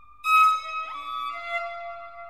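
Electronic violin in free improvisation. A held note fades out, then a sharp, loud bowed attack comes about a quarter second in, followed by a quick upward glide into several notes held together.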